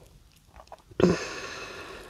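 A few small mouth clicks, then an audible breath from a woman holding a yoga pose: a breathy rush that starts suddenly about a second in and fades slowly.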